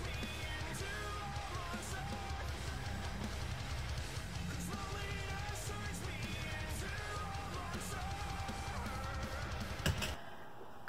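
Rock music playing back: electric guitars and a drum kit with a singing voice over them. It stops abruptly with a click at the very end.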